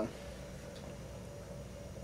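Quiet room tone with a faint, steady low hum and no distinct sounds.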